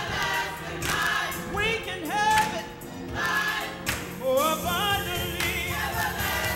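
Church choir singing a gospel song, the voices wavering with wide vibrato over a steady low accompaniment with a beat.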